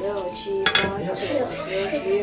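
Kitchen cleaver chopping green onions on a wooden cutting board: a few sharp knocks of the blade on the board.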